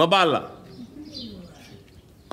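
A man's voice: a short vocal sound about half a second long that falls in pitch, then only faint background sound.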